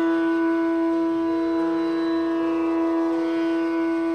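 Hindustani classical music: a bansuri (North Indian bamboo flute) plays slow, long-held notes over a steady drone.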